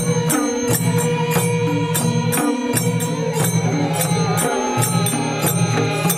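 Nepali folk music: two-headed madal drums beating a quick, steady rhythm under chanted singing.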